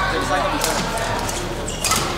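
Badminton rackets striking shuttlecocks on several courts: a scattering of sharp, irregular smacks, a few each second, over hall chatter and reverberation.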